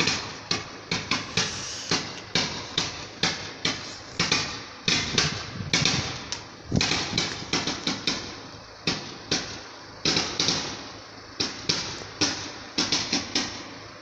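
Fireworks display going off: a rapid, irregular run of pretty loud bangs and crackles, several a second.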